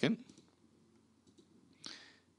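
Quiet room tone with one short click near the end.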